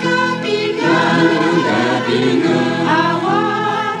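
Choir singing a gospel hymn in several parts, holding long notes in harmony, with a new phrase beginning about every second.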